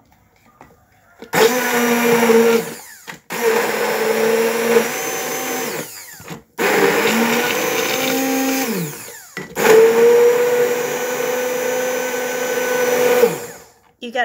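Hand-held stick blender puréeing a jar of fresh herbs, chillies, garlic and red wine vinegar, starting about a second in and running in four bursts with brief stops between them. The motor's hum holds a steady pitch while running and sags as each burst winds down.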